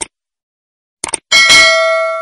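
Animated subscribe-button sound effects: a short click at the start and a quick double click about a second in, then a bright notification-bell ding that rings on with several steady tones and slowly fades.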